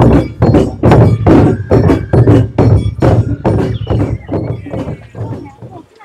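Taiko drums beaten with sticks in a steady marching rhythm, about three strokes a second, growing fainter toward the end.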